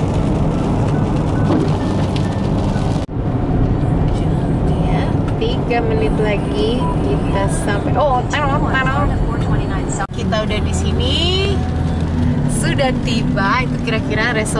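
Car cabin noise while driving on a wet road: a steady low rumble of engine and tyres with hiss from wet pavement and rain on the windshield. The noise drops out briefly about three seconds in and again about ten seconds in, and after the first dropout intermittent voices with wavering pitch sound over it.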